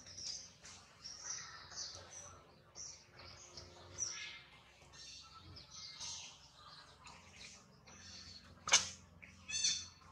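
High-pitched chirps and squeaks of small animals, repeated throughout, with one loud sharp call near the end followed by a short quick run of calls.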